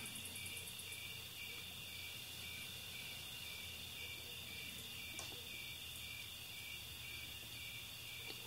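Faint, steady chirping of crickets, with a low hum underneath.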